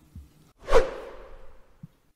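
A single whoosh sound effect about two-thirds of a second in, sweeping down in pitch and fading away over about a second. It works as a transition sting between segments of talk.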